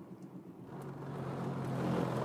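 Engine hum and road noise of a car heard from inside its cabin while driving, growing louder after about half a second.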